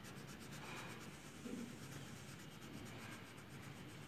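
Faint scratching of a yellow crayon rubbed back and forth on colouring-book paper in quick repeated strokes while filling in a shape.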